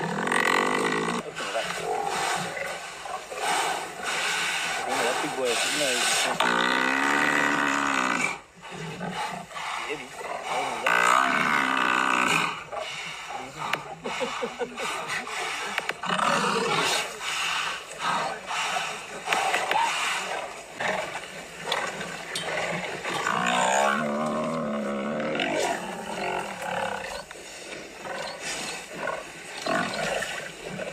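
Lions growling as they feed on a downed African buffalo: an unbroken run of deep growls, with a few long calls that waver up and down in pitch.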